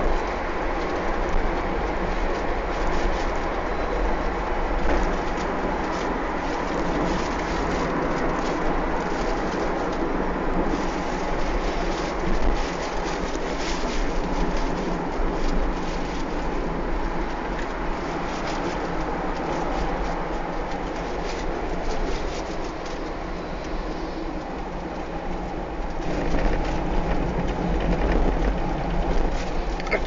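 Steady low rumble and road noise of a moving vehicle, continuous at an even level with no distinct knocks or horn.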